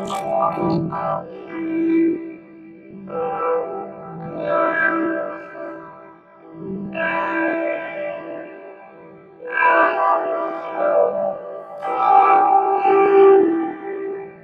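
A spoken voice clip put through layered pitch-shifting, chorus and distortion effects, so the words come out as buzzing, guitar-like chords in phrase-length bursts separated by short gaps.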